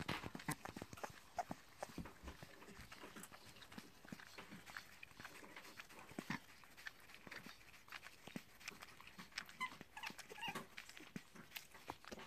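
Grey-headed flying fox eating soft chopped fruit: a run of irregular, wet chewing and smacking clicks, low in level.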